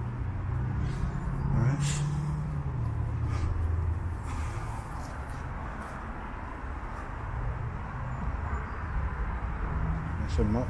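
Low hum of a motor vehicle's engine over outdoor background noise, dropping in pitch about two and a half seconds in, with a sharp click about two seconds in.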